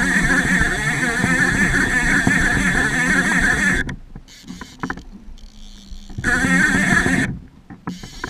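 Fishing reel drag buzzing as a hooked king salmon pulls line off. The first run lasts nearly four seconds and a second, shorter one comes about six seconds in. In between, the reel makes quieter clicking as line is wound in.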